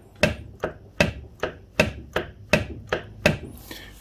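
Repeated sharp metal knocks, about two and a half a second, as a Triumph T140 gearbox mainshaft gripped with mole grips is worked against a dead stop. The shaft will not come out of the gearbox shell; the mechanic thinks a nut at its far end, holding the sprocket in the primary chain case, is still holding it.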